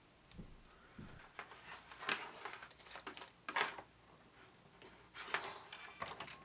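A few faint, brief rubbing and handling noises as a cotton swab wipes parts of a VCR's tape transport mechanism.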